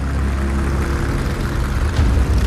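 Deep, steady rumble of vehicle engines, with a faint steady hum above it.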